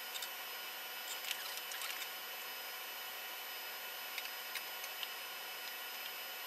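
Light clicks and small rattles of hands adjusting a small camera and its mount on a lab bench, a cluster in the first two seconds and then a few single clicks, over a steady hiss of equipment noise with faint high-pitched electrical whines.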